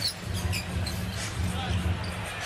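A basketball being dribbled on a hardwood court in repeated low thuds, with a few short sneaker squeaks, over steady arena crowd noise.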